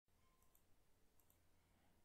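Near silence: faint room hiss with a few very faint clicks, in two pairs.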